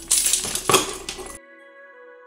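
A bunch of keys jingling and clinking, cut off abruptly about one and a half seconds in by quiet background music.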